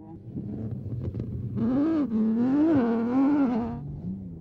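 Rally car engine running hard in desert sand, its note rising and falling with the revs from about one and a half seconds in, after a stretch of rushing noise.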